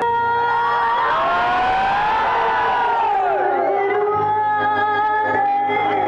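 Live band music played through stage loudspeakers, with a woman singing into a microphone and crowd noise underneath.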